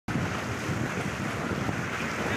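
Sea surf washing through shallow water, with wind buffeting the microphone: a steady rushing noise with uneven low gusts.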